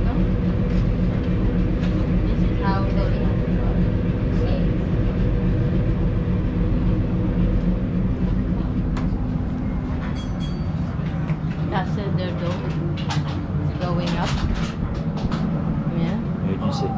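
A steady low mechanical drone with several fixed pitches, running unchanged, under scattered brief voices of people talking. A few short clicks come about two-thirds of the way through.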